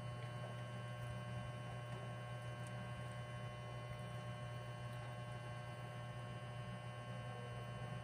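A steady low electrical hum, with a few faint thin steady tones above it.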